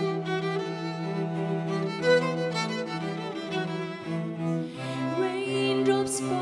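Instrumental passage of a slow pop ballad: bowed strings, cellos and violins, holding long notes over a low sustained bass line.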